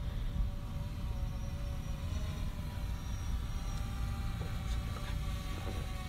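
Steady low rumble with a faint, slightly wavering hum above it.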